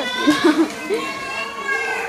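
Children's voices in the background, children playing and calling out, with one voice held in a long call in the second half.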